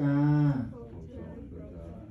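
A man's voice chanting a Buddhist prayer in a level monotone. He holds one low syllable for about half a second at the start, then goes on more softly.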